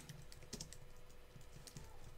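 Faint computer keyboard typing: scattered, irregular key clicks.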